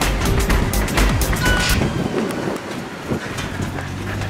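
Background music, fuller in the first two seconds and thinner after.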